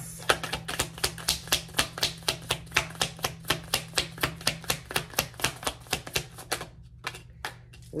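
A tarot deck shuffled by hand: the cards slap together in a quick, even patter of about five clicks a second, stopping shortly before the end. A low steady hum runs underneath.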